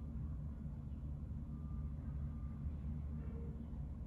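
A steady low rumble of background room noise, with no distinct event.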